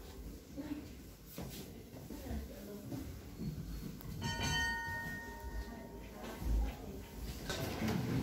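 A single bell strike about four seconds in, a clear ringing tone that dies away over about two seconds.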